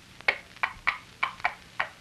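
Clip-clop of trotting horse hooves imitated as a sound effect, about seven sharp clicks in an uneven two-beat rhythm, answering a "giddy up pony".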